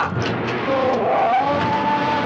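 Old movie soundtrack: a Geiger counter crackling fast as its needle reaches the top of the scale. Over it a shrill tone rises about halfway through and is held.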